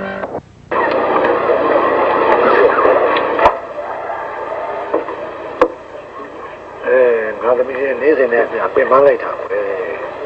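Mostly speech: voices talking in film dialogue, with a sharp click about three and a half seconds in.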